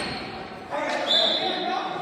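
Floor hockey play on a hard gym floor: a sudden knock about two-thirds of a second in, then a short, high squeak, all echoing in the large hall.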